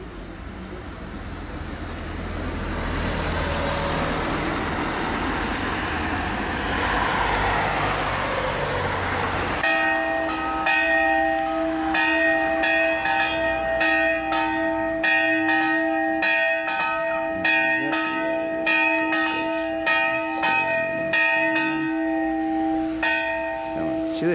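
Bells ringing: repeated strikes with long, steady, overlapping tones, starting abruptly about ten seconds in. Before that, a broad noise with a low rumble grows steadily louder.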